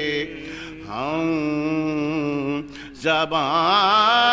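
A man's voice chanting soz, the melodic Urdu lament recited in Muharram gatherings. He holds long, wavering notes that glide up and down, with a short break about half a second in and another just before the three-second mark.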